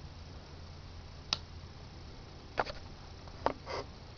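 A few light, sharp clicks about a second apart over a faint low steady hum.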